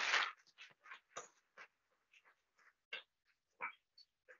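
Audience applauding: a loud burst of clapping at the start that breaks up into scattered, separate claps, chopped up as if by a video call's noise suppression.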